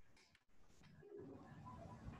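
Near silence, with a faint low coo from a pet bird.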